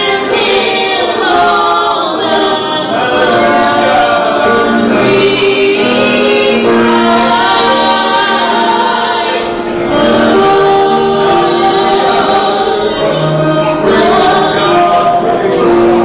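Two women singing a gospel song into microphones, accompanied by a grand piano.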